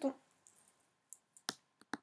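About five short, sharp clicks of computer keys being typed, spaced unevenly through the second half.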